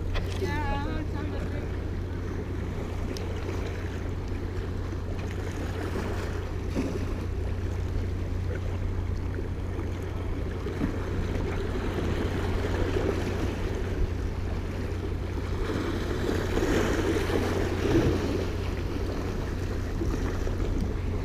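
Wind rumbling on the microphone over small waves washing and splashing against the jetty rocks, a steady noise throughout.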